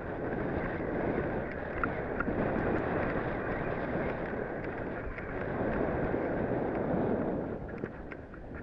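Fast downhill slide over tracked, crusty snow: a rough scraping rush of the snow under the rider's feet, mixed with wind on the microphone. It swells twice, about a second in and again after five seconds.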